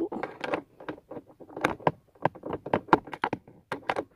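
A ratchet wrench backing out a screw from the console mount: a run of short, irregular clicks and knocks of metal tool on screw and plastic.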